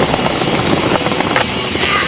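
Skateboard wheels rolling on asphalt, a steady gritty rumble, with a sharp clack of the board about one and a half seconds in as a trick is tried.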